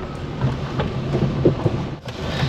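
Car driving slowly over a rough dirt track: a low rumble with scattered small knocks from the tyres and suspension, heard from inside the cabin.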